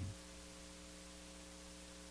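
Faint, steady electrical mains hum with light hiss, several fixed low tones held evenly throughout.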